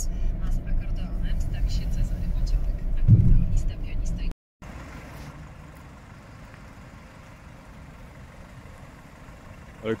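Steady low road-and-engine drone inside the cabin of a moving 2001 Mercedes C220 diesel, with a brief louder sound about three seconds in. A cut follows, then a much quieter outdoor background hiss.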